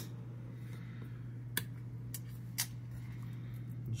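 A few sharp clicks about a second apart over a steady low hum: toggle switches being flipped on a bench power box to switch on battery and ignition feeds to a disconnected engine computer.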